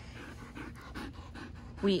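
Siberian husky panting close to the microphone, quick soft breaths in an even rhythm, about four a second.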